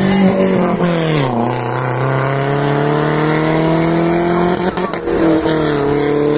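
Renault Sandero RS's 2.0-litre four-cylinder engine running hard as the car drives past close by. Its note drops sharply about a second in, then climbs slowly and steadily as it pulls away.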